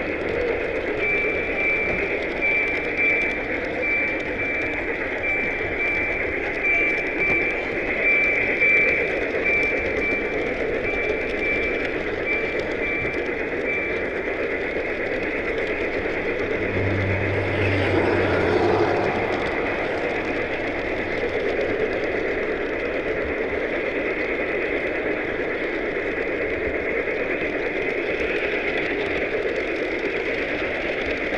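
Large-scale model train running on its track, heard from on board: a steady rolling rattle. A short high ping repeats about twice a second through the first half, and a brief low hum comes a little past the middle.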